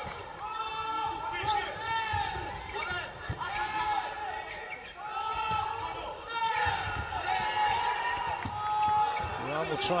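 Crowd in an indoor volleyball arena chanting and cheering through a rally, with many voices overlapping. Sharp smacks of the ball being served and hit stand out now and then.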